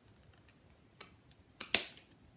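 Fabric scissors snipping through stacked layers of upholstery fabric at the corner of a flag: three short crisp clicks, one about a second in and two close together near the end.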